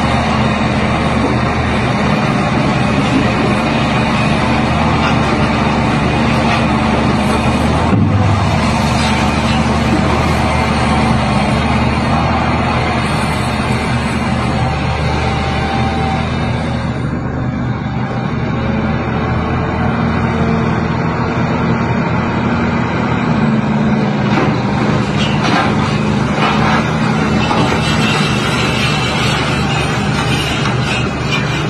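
Heavy diesel engines of crawler excavators running steadily as they work.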